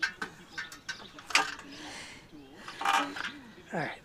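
A long pine board handled on a sawhorse: scattered wooden clicks and knocks, one sharp knock about a second and a half in, and a short scrape about three seconds in as the board shifts on the sawhorse.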